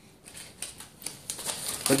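A string of light, irregular clicks and taps: small hard parts being handled.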